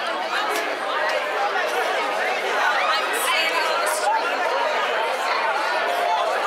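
A street crowd talking over one another: many voices at once, with no single speaker standing out, at a steady level.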